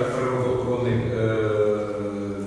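A man's voice talking slowly and indistinctly, with long held vowels.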